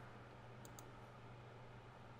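Near silence: room tone with a low steady hum, and two faint clicks in quick succession a little under a second in.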